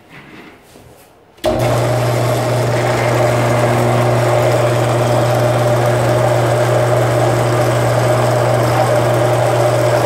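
Benchtop drill press switched on about a second and a half in, its motor then running with a steady hum as it turns a 3/8-inch bit to drill the hole for a truss-rod barrel nut.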